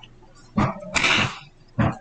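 A man coughing: three short coughs, the middle one the longest.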